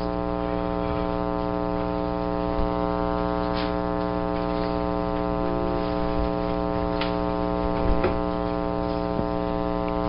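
Steady electrical mains hum with a stack of overtones, as on a recording system's audio line, with a few faint clicks in the second half.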